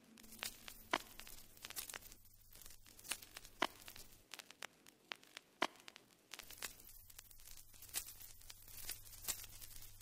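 Faint, irregular clicks and taps of fingertips on a tablet's glass touchscreen, picked up by the tablet's own microphone, over a faint low hum.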